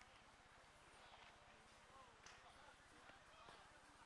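Near silence: faint outdoor ambience with distant, indistinct voices.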